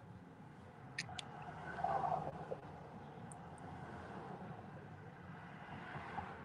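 Quiet car-cabin ambience: a low steady hum, with two light clicks about a second in and a brief, faint muffled sound around two seconds.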